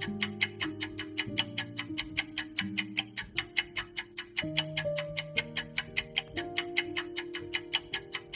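Countdown-timer sound effect: a clock ticking fast and evenly, over background music of slow held chords.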